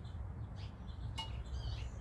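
Faint bird chirps, a few short calls and a brief twitter in the second half, over a low steady background noise.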